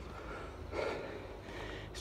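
A man breathing hard, with one audible breath about three-quarters of a second in, winded from climbing a steep flight of stone steps.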